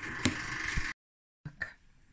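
A metal spoon mixing crumbly cottage cheese with semolina in a bowl, scraping and clicking against it. The sound cuts off dead about a second in, followed by a couple of light clicks.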